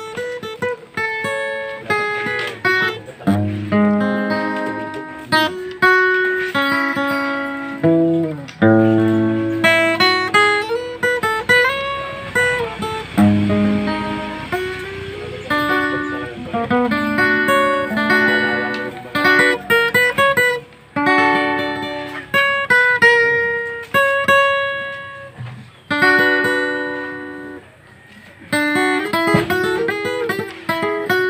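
Acoustic guitar played solo: a picked melody over bass notes, each note ringing and fading, with a few notes bent in pitch around the middle.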